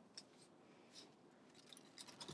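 Near silence: room tone, with a few very faint brief ticks.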